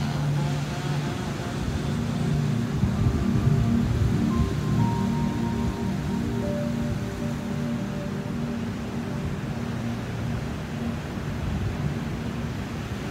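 Slow ambient background music with long held notes, over the steady noise of surf.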